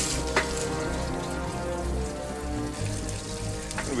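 Water splashing and trickling from a hose onto washed gravel, over background music of steady held tones.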